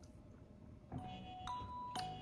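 Near-silent room tone, then from about a second in a simple melody of struck, ringing mallet-percussion notes like a glockenspiel, a new note about every half second: thinking music while a question is being answered.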